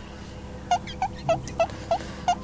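A truck's reversing alarm: a quick, evenly spaced run of short chirping beeps, about three a second, starting under a second in.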